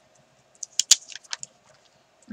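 A sheet of stickers crinkling and crackling as it is handled, a quick run of sharp crackles for about a second, loudest near the middle.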